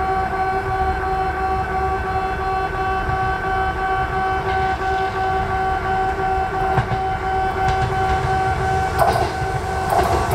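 Japanese level-crossing warning alarm ringing a steady, repeated pitched tone. Under it a Kintetsu 21000 series Urban Liner electric express approaches, and its rumble and wheel clatter come in near the end as it reaches the crossing.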